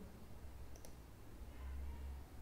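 Faint computer mouse clicking, a quick pair of ticks a little under a second in, over a low hum.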